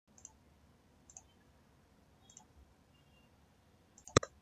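Three faint computer mouse clicks about a second apart, each a quick double tick, over near silence.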